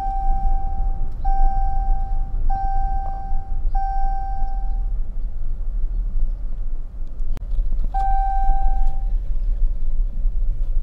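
Low, steady rumble of a car heard from inside the cabin, with an electronic warning chime beeping at one steady pitch. The chime gives long beeps about every 1.25 seconds, four times, then stops. A sharp click comes about seven seconds in, and one more beep follows near the end.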